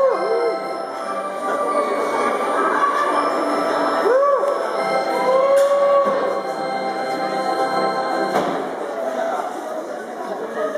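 Live electronic keyboard playing sustained organ-like chords, with a few voices calling out over the music.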